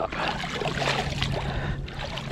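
Water splashing and running off a wire-basket clam rake as it is lifted up out of the shallow bay.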